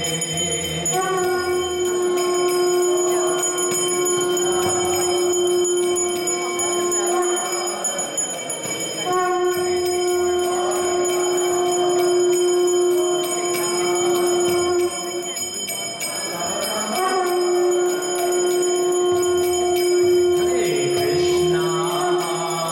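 Conch shell (shankha) blown in three long, steady blasts of about six seconds each, with short breaks between them, over a bell ringing continuously.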